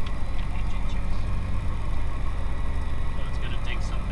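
Piston engine and propeller of a single-engine light aircraft running steadily at low taxi power, heard inside the cockpit as a deep, even drone.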